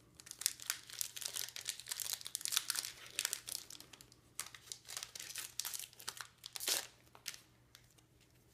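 A Pokémon trading card booster pack's foil wrapper crinkling and tearing as it is opened by hand, in many irregular crackly bursts, thickest in the first half.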